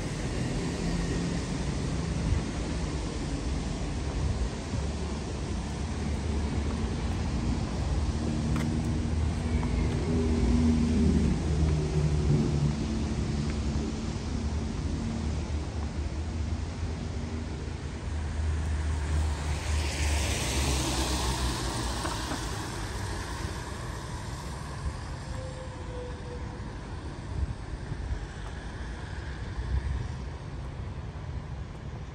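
Street traffic on wet roads: a steady low rumble of car engines, with a louder rush of tyre hiss as a vehicle passes about two-thirds of the way through.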